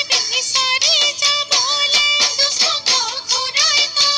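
An Assamese Bihu film song: a high female voice sings an ornamented, wavering melody over a steady percussion beat.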